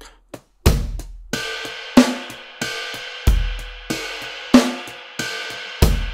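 A sampled drum kit played by finger on the pads of a Native Instruments Maschine MK3 at a very slow tempo: deep kick drum hits three times, two sharp snare hits between them, and ride bell strokes ringing on over them.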